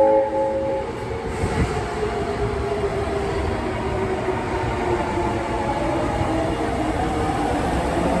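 Osaka Metro 23 series electric train pulling away from the platform: a short horn blast right at the start, then the traction motors' whine rising steadily in pitch as the train speeds up, over the rumble of wheels on the track.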